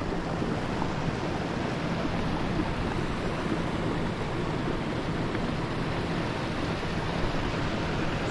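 Steady rush of flowing river water, an even noise that holds at one level throughout.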